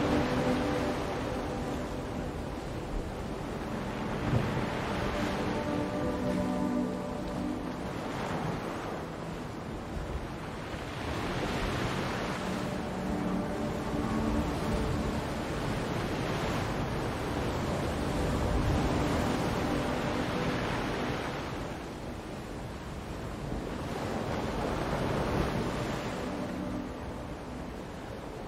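Ocean waves washing in and drawing back, swelling about every six seconds, over soft ambient music with a few held low tones.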